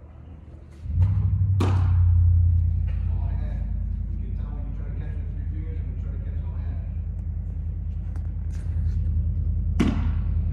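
A low, steady machine hum starts about a second in and keeps running. Over it come two sharp pops of a baseball smacking into a catcher's mitt, one early and one near the end, with faint distant voices between them.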